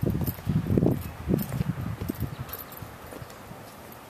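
Irregular low thumps and rumble from walking with a handheld camera, footsteps and handling noise together. They are loudest in the first two and a half seconds, then settle to a quiet background.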